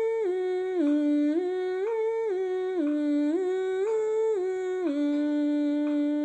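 A woman humming a vocal warm-up: short stepwise runs up and down a few notes of the C scale, repeated about three times, then one low note held steady from about five seconds in.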